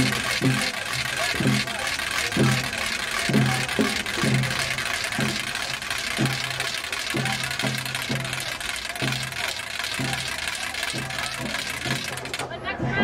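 A crowd of marching protesters chanting a slogan in rhythm, short repeated beats about every half second over a steady wash of crowd noise.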